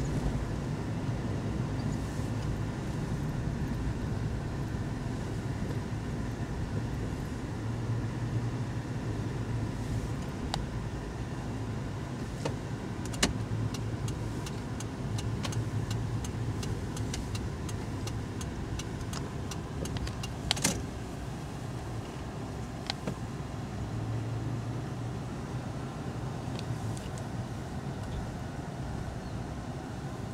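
A car moving slowly, heard from inside the cabin: a steady low engine and road hum. A run of sharp clicks comes in the middle, with two louder ones standing out.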